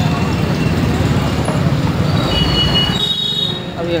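Steady rumble of a two-wheeler's engine and road noise while riding through street traffic, with a thin high squeal starting about two seconds in and lasting over a second.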